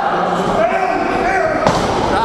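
Voices talking over one sharp thump about one and a half seconds in: a blow landing on a wrestling ring's canvas.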